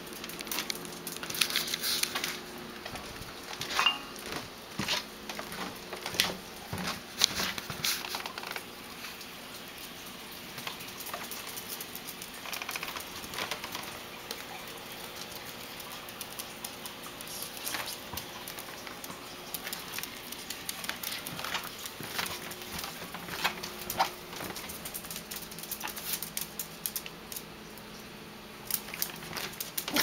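Claws and paws of a pet skunk and a Yorkshire terrier clicking and tapping on a hard floor as they trot around. The taps come irregularly, in quick clusters.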